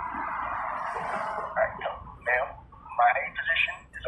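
A person's voice speaking over a phone's speaker, fairly quiet. It is muffled at first, then clearer words from about a second and a half in.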